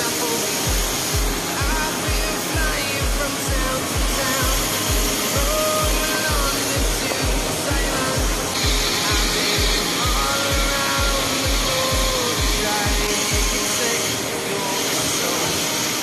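Background music with a steady bass beat, about three beats a second, and a melody line over it; the beat drops out near the end. Under it runs the steady rush of a waterfall.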